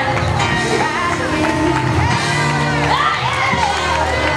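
Worship music with held chords, with the voices of a praising congregation singing and shouting over it.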